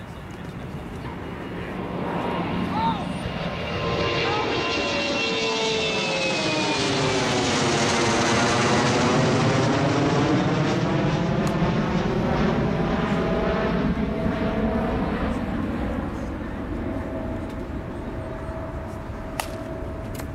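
A jet airplane flying low overhead: its noise swells over several seconds, peaks around the middle with a faint falling whine, and slowly fades away.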